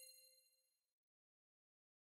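Near silence: the last faint ringing of a bright, bell-like logo chime dies away within the first second.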